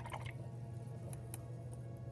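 A watercolor brush dipped and dabbed in a cup of rinse water: a few light taps and drips.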